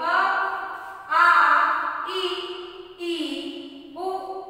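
A woman's voice chanting Hindi letters in a sing-song, about four drawn-out syllables, each held for about a second on a different pitch.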